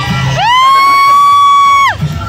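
A single long, high-pitched whoop from a spectator: it rises sharply, holds one steady note for about a second and a half, then drops away just before the end, over crowd cheering and music.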